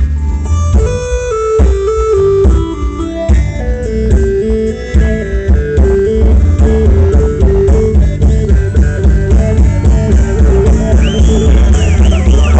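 Live band playing: drums and bass guitar keep a steady groove under a lead melody that steps from note to note. Near the end, higher notes that bend up and down join in.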